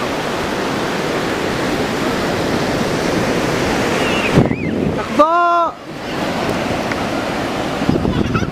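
Steady wash of ocean surf breaking on the beach, with wind buffeting the microphone. A little after five seconds in, a voice gives one short high-pitched call.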